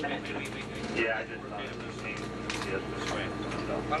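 Indistinct voices over the steady hum of the space station's cabin ventilation and equipment.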